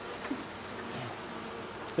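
Honeybees humming steadily around an open hive while its frames are being inspected.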